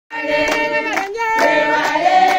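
A group of people singing together while clapping their hands in time, about two claps a second.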